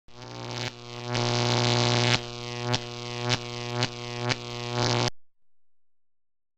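Synthesized intro music built on a single held low note that swells up, then takes five rhythmic accented hits and cuts off abruptly about five seconds in.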